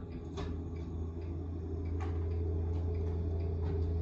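Compact tractor engine running steadily, a low hum heard through window glass that grows slowly louder as the tractor pushes snow toward the house, with a few faint ticks.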